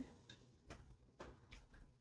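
Near silence with a few faint, light ticks: a diamond painting drill pen pressing resin drills onto the canvas.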